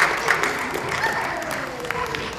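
Church congregation applauding: dense hand clapping that thins out and fades toward the end.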